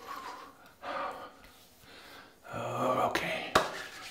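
A man's audible breaths, then a short low vocal murmur, with one sharp click near the end.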